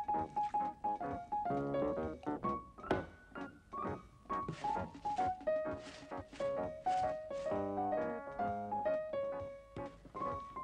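Piano or keyboard score playing a bouncy tune of short notes, with a sharp knock about three seconds in. In the middle come a few short swishing strokes of a brush scrubbing laundry.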